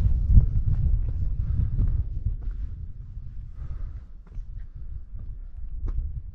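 Wind buffeting the microphone: a gusty low rumble, strongest in the first two seconds and easing after.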